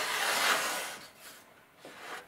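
Abrasive paper on a sanding stick rubbed along a balsa wing's leading edge, rounding it to a ball-nose profile: a rough rub about a second long that fades out.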